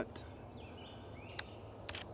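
Quiet woodland ambience, then a camera shutter firing on its self-timer: a sharp click about one and a half seconds in and a quick double click near the end.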